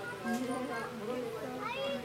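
Lion cub giving a high, cat-like mew near the end, over the voices of people chatting.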